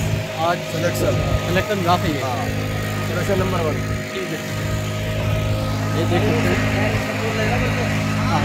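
A running engine from road-works machinery gives a steady, unbroken drone, with faint voices over it.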